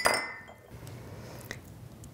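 A sharp clink of a utensil against a dish, ringing briefly, followed by faint scraping and handling of kitchenware and a small tick about a second and a half in.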